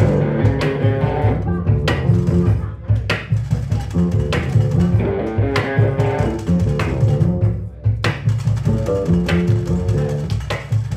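Live instrumental trio: electric guitar plays repeating note figures over plucked double bass notes. Sharp percussion strikes fall every second or two.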